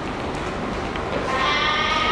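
A dog gives a drawn-out, high-pitched whining cry that starts near the end and carries on, over the faint scuffle of dogs playing.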